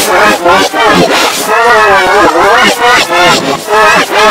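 Loud, distorted yelling played in reverse and layered with pitch-shifted copies of itself (the 'G major' edit), its pitch wobbling up and down, with a long wavering stretch in the middle.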